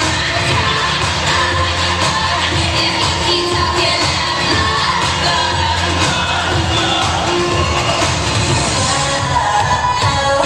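Loud pop song with singing over a steady bass, played through a gymnasium's sound system.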